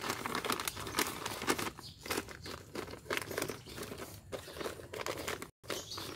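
Black plastic polybags crinkling and rustling as a hand presses and firms moist potting soil around lemon seedlings, in quick irregular bursts.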